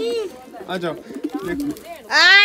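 Domestic pigeons cooing, mixed with short bits of a person's voice.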